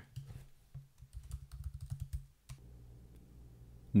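Typing on a computer keyboard: a quick run of keystrokes for about two and a half seconds, then a faint steady low hum.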